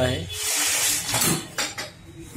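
A pedal exerciser's box and packed parts being handled: a rough scraping rush for about a second, then a few sharp knocks and clatters.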